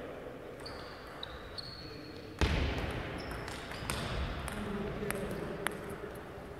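Table tennis play in a gym hall: short high shoe squeaks, a loud thump about two and a half seconds in, then a few sharp clicks of the ball bouncing, with voices in the background.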